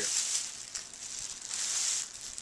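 A thin plastic trash bag rustling and crinkling as it is handled and lifted.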